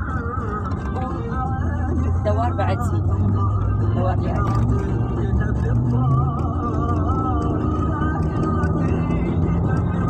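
A car driving, with steady low road and engine rumble, under music with a wavering voice.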